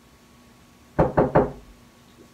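Three quick knocks on a wooden bedroom door, about a second in.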